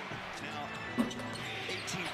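NBA game broadcast audio: steady arena crowd noise with one sharp basketball bounce on the hardwood about a second in.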